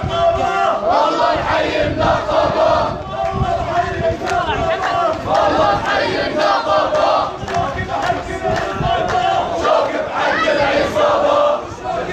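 Large crowd of men chanting protest slogans loudly in unison, in long held phrases with short breaks between them.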